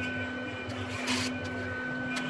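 Makita cordless drill-driver driving a screw into a wooden disc, its motor whirring loudest for about half a second around a second in, over a steady background hum.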